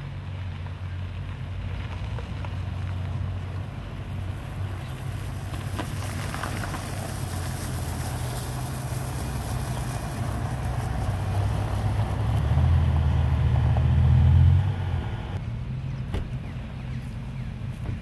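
Sports cars' engines running with a low note as they drive slowly over gravel, with tyres crunching on the stones. The engine sound swells to its loudest a little after halfway, as a car passes close, then drops away sharply.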